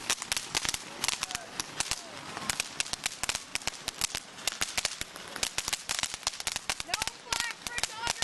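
Ground fountain firework spraying sparks and crackling, with a fast, irregular run of sharp pops that goes on without a break.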